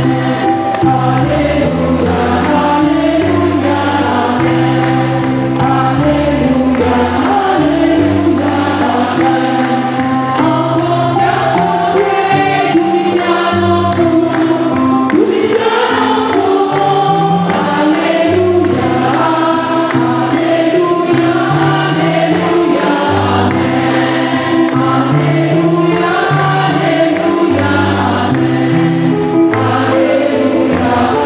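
Church choir singing a hymn, with held low notes underneath that change every second or two.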